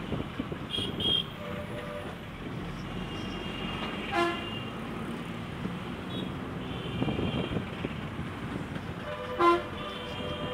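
Busy street traffic, a steady rumble of engines and tyres, with several short vehicle horn toots. The two loudest are single brief beeps, about four seconds in and near the end, with fainter higher-pitched horns between.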